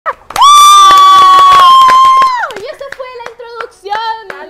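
A woman's long, high-pitched cheering yell held steady for about two seconds, with hand claps throughout. It breaks off into excited chatter and more clapping.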